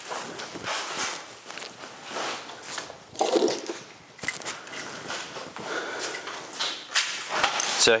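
Old, stiff aircraft wing fabric rustling and crackling in irregular bursts as it is handled and pulled loose from a wooden wing, mixed with footsteps on a floor strewn with fabric scraps.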